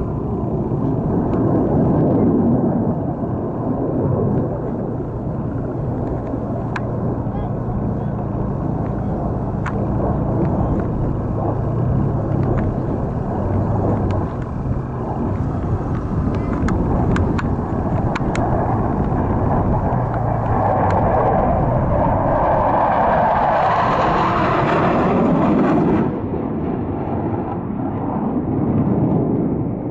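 Blue Angels jet noise, a loud steady rumble with a brighter rush building over several seconds near the end that cuts off suddenly.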